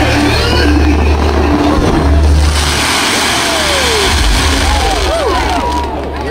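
Fireworks barrage: a continuous low rumble of bursts with a dense crackling hiss over it, thinning out near the end as the shells burn out. Crowd voices are mixed in.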